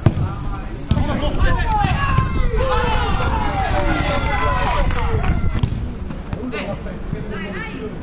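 Men's voices shouting and calling out across a football pitch during play, with a sharp thud at the very start and a few more short knocks.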